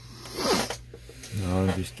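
Foil wrapper of a trading-card pack tearing open in one short rip about half a second in, followed near the end by a brief low voiced hum.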